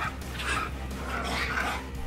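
Street dogs barking in short, rough, repeated calls, a few a second.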